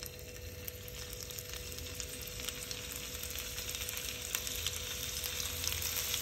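Paneer cubes sizzling and crackling in hot refined oil on a flat tawa as they are laid in one at a time; the frying grows steadily louder as more cubes go in.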